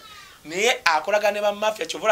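A man speaking excitedly, his voice sliding sharply up in pitch about half a second in and staying high and lively.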